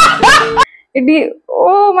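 An inserted meme sound clip: music with a few short, rising yelping cries, cut off suddenly just over half a second in.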